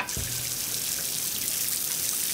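Outdoor push-button foot shower turned on with a knock, then a steady hiss of water spraying from its spout onto wet concrete and bare feet.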